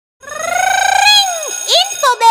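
A high, voice-like sung tone that rises slowly for about a second and then falls away, followed by a quick upward swoop: the opening sound logo of an animated studio's intro.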